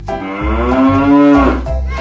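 A cow's moo: one long call of about a second and a half, over background music with a steady beat.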